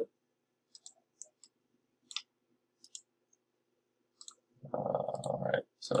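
Computer mouse clicking: about eight short, sharp clicks spaced irregularly, some in quick pairs, while the software is worked. Near the end comes about a second of low, hummed voice, louder than the clicks.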